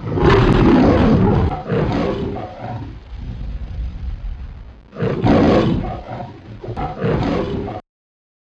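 A lion's roar sound effect: a loud roar at the start, then a weaker one, and after a lull two more roars that cut off suddenly near the end.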